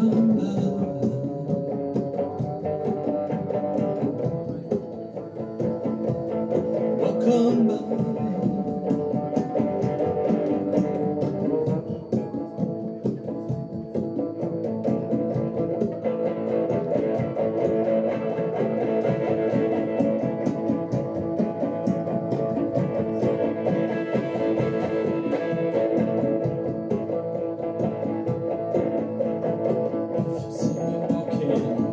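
Electric guitar played live: a dense stream of picked notes over sustained, ringing tones, with no pause.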